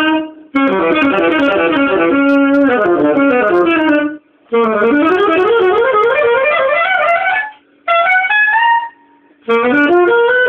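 Alto saxophone playing fast unaccompanied jazz runs that swoop up and down, including one long rising run in the middle. The phrases are broken by four short silent pauses.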